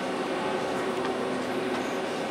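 Steady mechanical hum and hiss of background machinery or ventilation, even throughout, with a few faint steady tones in it.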